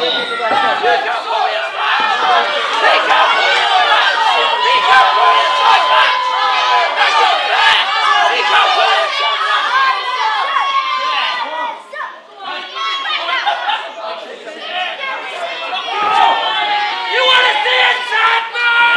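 A crowd of spectators chattering and shouting, with many voices, adults and children, overlapping throughout. The noise drops briefly about twelve seconds in, then builds again.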